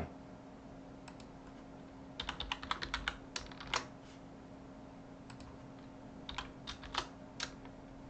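Typing on a computer keyboard: a quick run of keystrokes from about two to four seconds in, then scattered single keystrokes, over a faint steady hum.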